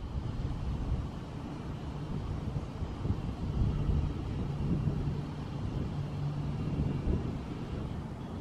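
Low engine rumble from a motor vehicle, with a steady low hum for a few seconds in the middle.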